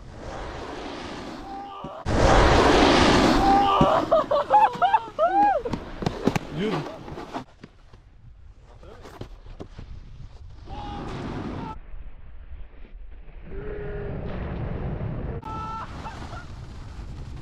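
Snowboard run in a terrain park. About two seconds in, a sudden loud rush of wind and snow noise hits the action camera's microphone for about two seconds. It is followed by a few excited whooping shouts, then quieter, distant voices.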